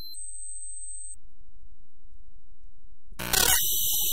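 Harsh experimental electronic music (extratone/glitch style): a thin, steady high synthesizer tone for about a second over a low rumble. About three seconds in, a sudden loud wall of harsh synthesized noise breaks in.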